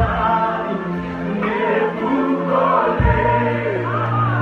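Live gospel worship music: a group of voices singing with a band over long held bass notes, the bass shifting to a lower note about three seconds in.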